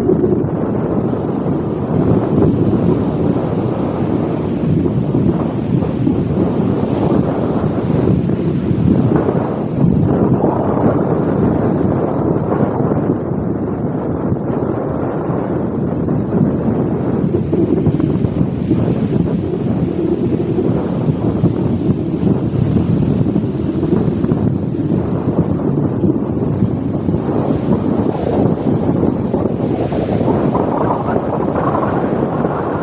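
Wind buffeting the microphone over the steady rush of breaking surf, loud and unbroken.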